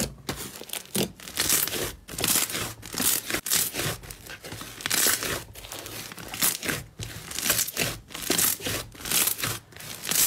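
A large lump of red slime being squeezed, pulled and stretched by hand, giving off repeated sticky crackling bursts, a little more than one a second.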